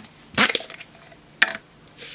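Plastic case being pried open by hand. There is a loud plastic crack about half a second in, then a sharp click about a second later as the halves come apart.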